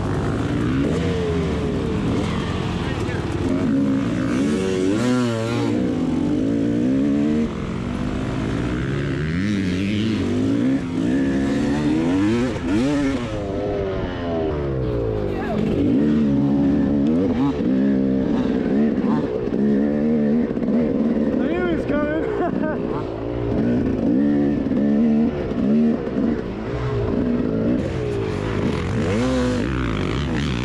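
Two-stroke KTM enduro dirt bike engine, ridden on tight single track, revving up and down over and over as the throttle is opened and closed every second or two.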